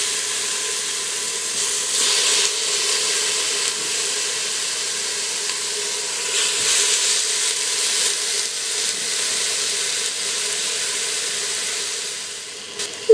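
Chicken thighs sizzling as they sear in the hot stainless-steel inner pot of an Instant Pot on the sauté setting: a steady frying hiss. It swells briefly about two seconds in, and again around six seconds, as more thighs are laid into the pot with tongs.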